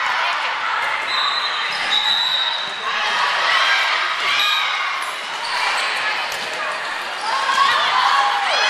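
Girls' voices calling out across an echoing gym during a volleyball match, with the thuds of a volleyball bouncing or being struck on the court.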